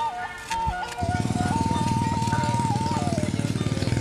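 Background music carrying a simple high melody. About a second in, a motorcycle engine comes in suddenly and runs steadily under the music.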